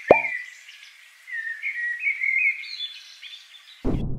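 Birds chirping and twittering in a backyard ambience track, opened by a short cartoon pop sound effect. Near the end a brief rushing burst of noise cuts in.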